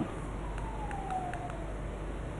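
Faint steady low hum and hiss, with a faint single tone sliding down in pitch through the middle.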